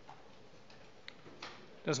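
A pause in a parliamentary chamber: faint room noise with a few soft, sharp clicks, then a man starts speaking near the end.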